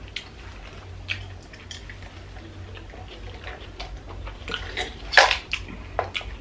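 Close-miked eating sounds: soft chewing and small mouth clicks and smacks as a burger is eaten, with one louder, short wet smack or slurp about five seconds in.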